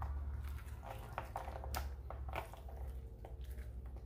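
Gloved fingers prying the meat away from a spiny lobster tail's split shell: a scatter of small crackles and clicks from the shell, over a low steady hum.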